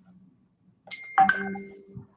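A short bell-like chime, an electronic ding such as a notification or alert tone: a sharp strike about a second in, then several steady ringing tones that fade out within about a second.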